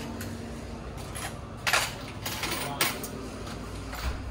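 Coins clinking on a shop counter as change is counted out, a few sharp chinks about halfway through and again near three seconds in.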